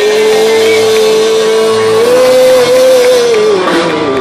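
Live rock and roll band with electric guitars and drums holding one long note to close a song: the note slides up at the start, rises a step about halfway and slides down near the end.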